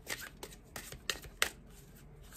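Oracle card deck being shuffled by hand: a quick, irregular run of crisp card snaps and slaps, about three a second, the loudest about halfway through.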